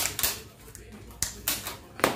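Handling noise close to the microphone: a few short rustling scrapes, about five in two seconds, as cloth or wrapping brushes near the camera.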